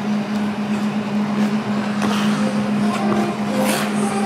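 Steady low hum of ice-arena machinery over a noisy background, with a brief hiss near the end.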